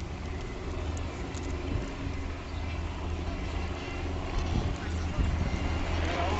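Steady low mechanical hum with indistinct voices.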